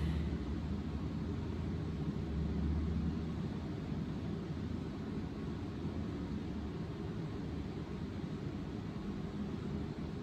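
Steady low rumble of background noise with a faint hiss above it, with no distinct events.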